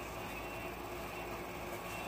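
Steady hiss with a low hum from a wall-mounted room air conditioner running.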